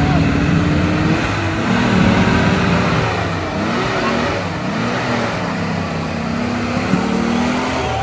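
An off-road vehicle's engine revving up and down as it works through deep mud, with onlookers' voices mixed in.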